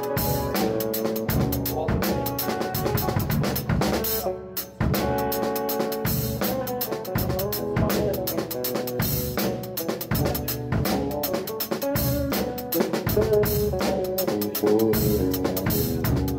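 Drum kit played with sticks in a laid-back shuffle groove, over sustained keyboard notes, with a brief break about four and a half seconds in.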